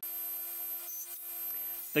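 Table saw running steadily with no cut yet: a constant hum with a faint high whine.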